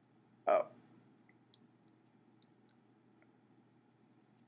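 A short spoken 'Oh', then faint scattered clicks and ticks as a saxophone mouthpiece on a plastic marker-cap adapter is pushed and worked onto the end of a drilled carrot.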